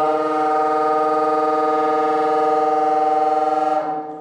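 Solo bassoon holding one long, steady low note, which stops shortly before the end and leaves the hall's reverberation ringing.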